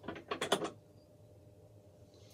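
Small metal pipe tool being handled and opened: a quick run of small clicks in the first second.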